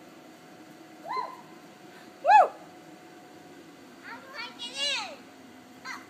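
Short, high-pitched wordless voice cries of excitement: one about a second in, a louder rising-and-falling one about two seconds in, and a quick falling run of several near the end.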